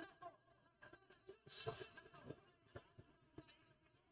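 Near silence, with a few faint scattered clicks and a brief soft hiss about a second and a half in.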